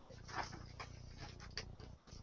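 A few faint, brief rustles and soft knocks as a hardback Bible is picked up and handled.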